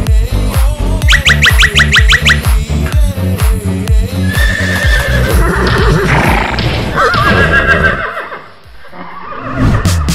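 Electronic background music with a steady beat, with a run of quick rising chirps about a second in. About four seconds in, a horse whinny sound effect plays over the music, and the music dips briefly near the end.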